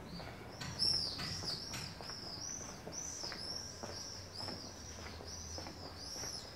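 A small bird calling a run of short, high, arched chirps, about three a second, that keeps going without a break. Faint ticks of footsteps sound underneath.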